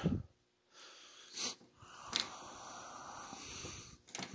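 Faint handling sounds of wires and an alligator clip being worked into a harness plug: a couple of soft clicks, then a faint steady hiss through the second half.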